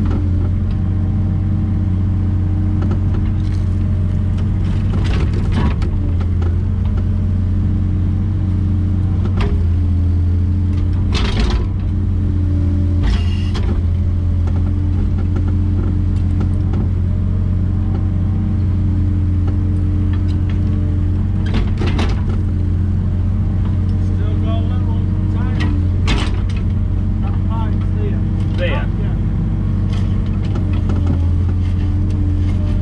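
A JCB 3-tonne mini excavator's diesel engine running steadily under digging load, heard from inside the cab. Several sharp knocks are heard as the bucket works the soil and stones in the trench.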